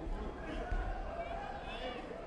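Voices and chatter echoing in a large sports hall, with a couple of low thumps in the first second.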